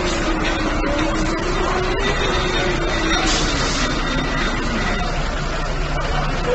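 A fire engine's motor running its hose pump amid dense street noise, with a low hum that slides down in pitch a few seconds in.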